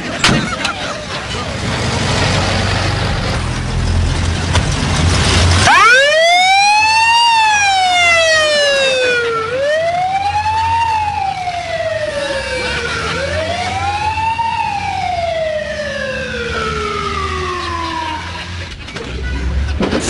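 Ambulance siren wailing: after a few seconds of rumbling vehicle noise, the siren starts about six seconds in and runs through three cycles, each rising quickly and then sliding slowly down, about every three and a half seconds, before it dies away near the end.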